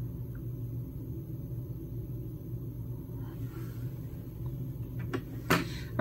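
Quiet, steady low room hum, with two short sharp clicks near the end, the second louder.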